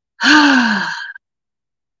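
A woman's long sigh, voiced and breathy, falling in pitch and fading over about a second.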